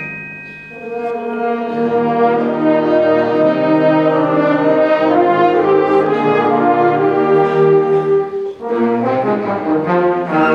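School concert band playing a slow passage of held chords led by the brass. The music dips at the start and swells back in within the first second or two, breaks off briefly about eight and a half seconds in, then the full band comes back.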